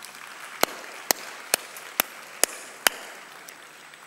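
Audience applauding, with six sharp, evenly spaced claps close to the microphone, about two a second; the applause dies away near the end.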